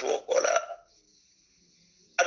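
A man's short vocal sound in two quick parts in the first second, then a pause with only faint hiss.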